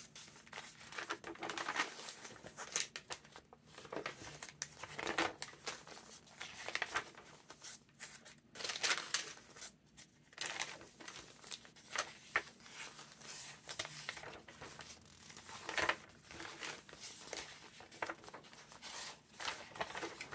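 Large, grungy handmade paper pages of a junk journal being turned by hand one after another: repeated brief paper rustles and crinkles at an uneven pace.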